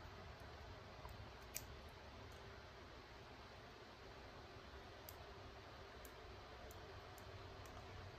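Near silence with a few faint, scattered clicks of a small folding knife's metal blade and handle parts being handled and fitted together at the pivot; the clearest click comes about one and a half seconds in.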